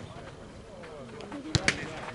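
Two sharp strikes of a futnet ball in quick succession about a second and a half in, with voices in the background.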